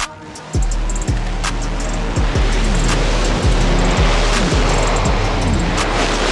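Nitro Funny Car engines at full throttle on a drag-strip pass, a loud steady roar that sets in about half a second in, with background music carrying a steady drum beat over it.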